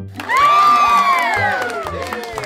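Group of children cheering, starting about a quarter second in, loudest at first, then fading with their voices falling in pitch. Children's background music with a steady beat runs underneath.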